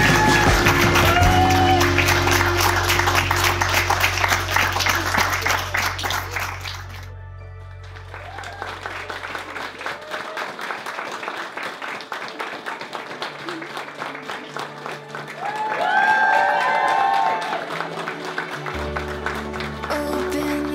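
Wedding guests applauding over background music. The clapping is loud at first, breaks off sharply about seven seconds in, then carries on more quietly, swelling again near the end.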